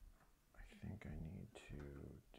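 A voice speaking quietly, mumbled too softly for the words to be made out, with a faint click about a second in.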